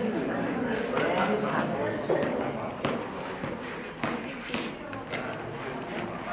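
Several people talking indistinctly in a large studio, with scattered footsteps and sneaker scuffs on the floor.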